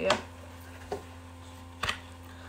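A travel mug and gloves being handled out of a cardboard gift box: a light knock at the start, a faint tap about a second in and a sharper click near the end, over a steady low hum.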